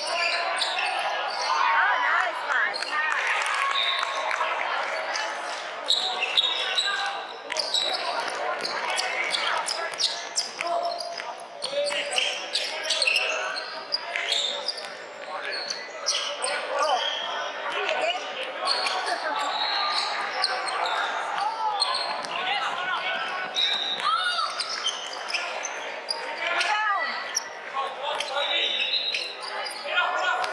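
Basketball game in a large indoor hall: a ball bouncing on the hardwood court again and again, with players' and spectators' voices calling out and echoing.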